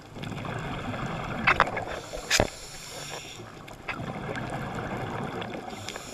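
Muffled underwater noise picked up by a camera in the water, a steady hiss and rush. About a second and a half in there is a short cluster of clicks, and just after two seconds a single sharp knock.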